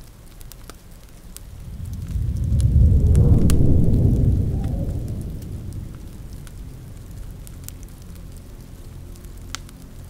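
A low rumble of thunder swells about a second and a half in, peaks around three to four seconds and slowly fades. Under it, a fireplace crackles with scattered small pops against steady rain.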